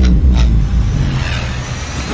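Movie-trailer sound effects of a car flipping over in a crash: a deep rumble with a sharp impact about half a second in, then a steady noisy rush as the car lands on its roof and slides.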